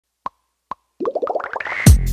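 Edited intro sound effects: two short plops, then a quick run of blips climbing in pitch and speeding up, ending in a loud bass-heavy hit as the music beat starts near the end.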